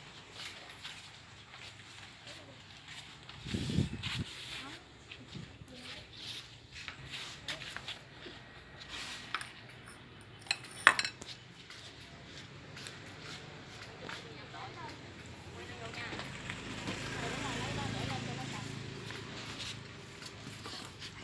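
Ceramic bowls clinking as they are carried and set down on a tiled floor, with a sharp clack about eleven seconds in and a dull thump about four seconds in.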